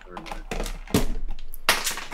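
Several sharp clicks and knocks from a hard vape box mod being handled close to the camera, with a low rumble of handling underneath and brief bits of voice.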